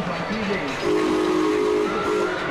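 Small steam locomotive's whistle sounding one chord-like blast of about a second, starting about a second in, with a short second toot at the very end, over the running of the park train.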